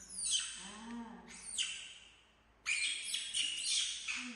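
Young macaque screeching: short high-pitched squeals that fall in pitch near the start and about a second later, then a longer run of squeals near the end. A brief low voiced sound comes about a second in.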